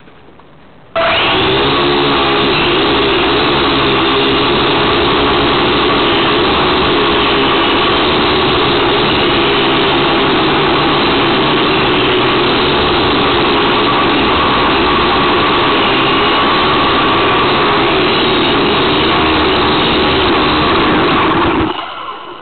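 Syma X1 quadcopter's four small electric motors and propellers, heard close up through a camera mounted on its frame: they start abruptly about a second in and run steadily with a wavering whine through the flight, then wind down just before the end.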